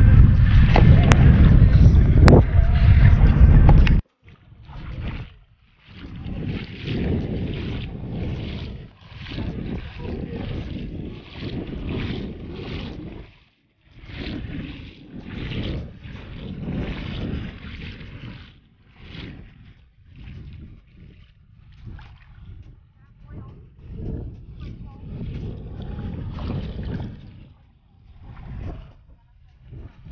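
Wind buffeting the camera's microphone for the first few seconds, cutting off suddenly. Then footsteps splashing through shallow sea water, in irregular pulses.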